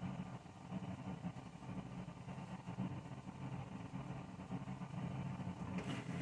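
A steady low hum in a quiet room, with no distinct events.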